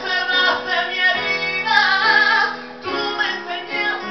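A man singing a sustained, wavering vocal line over live instrumental accompaniment.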